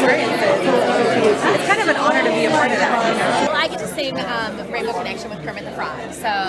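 Overlapping chatter of many people talking at once in a large, busy hall, dropping somewhat in level about two thirds of the way through.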